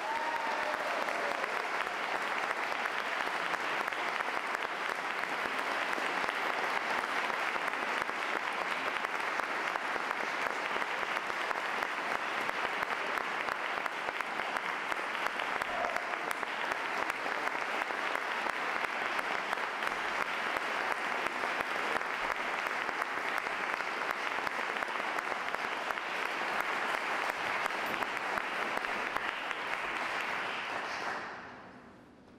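Audience applauding steadily to welcome a performer onto the stage, a long, even round of clapping.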